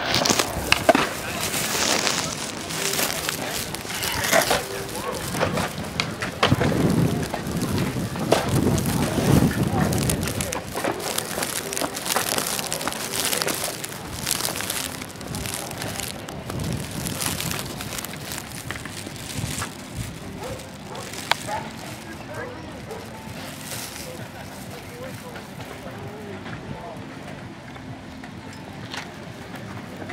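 Indistinct voices of people around, over outdoor ambience with scattered clicks and knocks, busier in the first half and quieter toward the end.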